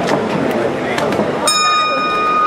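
Crowd voices around a boxing ring, then about one and a half seconds in the ring bell sounds with a clear, steady ring, marking the end of a round.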